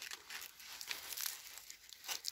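Faint crinkling and rustling of a corn ear's husk and the surrounding leaves being handled by hand, made up of many small crackles.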